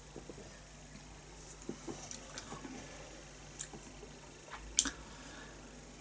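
Quiet room with a few faint, scattered clicks and soft rustles, two of them sharper a little past the middle.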